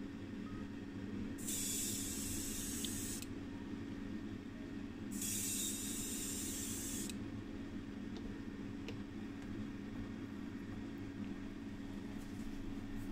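Two bursts of paint spraying, each about two seconds long, the first a little over a second in and the second around five seconds in, as off-white enamel is sprayed onto small diecast toy car parts. A steady low hum runs underneath.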